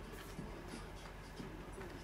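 Soft rustling of fabric as clothes are handled and smoothed flat by hand.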